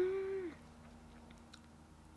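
A woman's short hummed "mmm", held on one note that drifts slightly upward, stops about half a second in. After that it is quiet, with a few faint small clicks.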